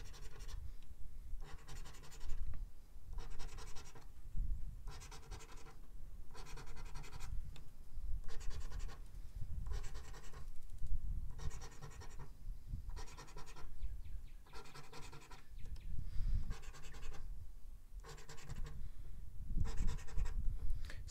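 A scratch coin rubbing the latex coating off a lottery scratch-off ticket in repeated short strokes, roughly one a second.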